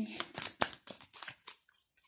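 Tarot cards being shuffled by hand: a quick run of crisp snaps and flicks of card stock that thins out toward the end.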